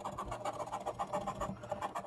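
A coin scratching the latex coating off a paper scratch-off lottery ticket in rapid back-and-forth strokes.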